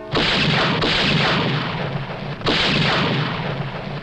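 Three loud gunshots, the first two close together at the start and the third about two and a half seconds in, each with a long echoing tail.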